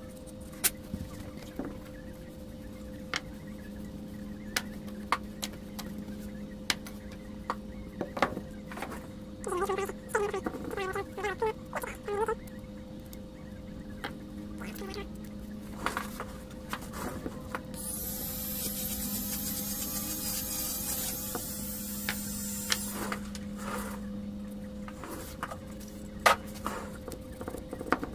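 Hand-handling noise from an opened Milwaukee M18 battery pack and its loose cells: scattered light clicks and knocks of plastic casing and cells, with short squeaky stretches around ten seconds in. A high hiss runs for about five seconds a little past the middle, over a steady low hum.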